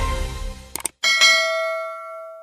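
Outro music tails off with two short clicks, then about a second in a bright bell-like chime is struck and rings on, fading slowly.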